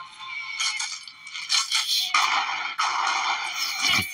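Music from an animated cartoon's soundtrack, with a few sharp knocks in the first half and a dense stretch of noise in the second half.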